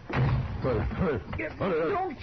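A door slamming shut with a loud bang, followed by a man's wordless vocal sounds.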